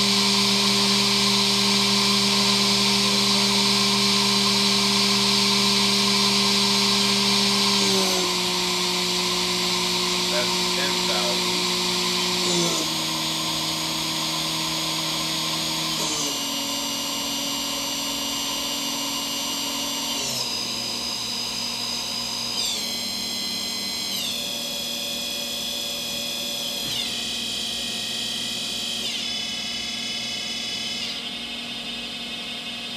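Haas VF-2SS CNC mill's spindle whining steadily at 12,000 RPM, then dropping in pitch in about eight steps as its speed is turned down from the control panel.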